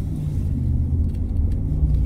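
Steady low rumble of a 2019 Ram 1500 pickup on the move, heard inside the cab: engine and road noise with no other sound standing out.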